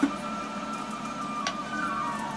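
Kitchen knife working a vegetable over a wooden cutting board, with two short sharp clicks, one at the start and one about a second and a half in, over a steady background of held tones.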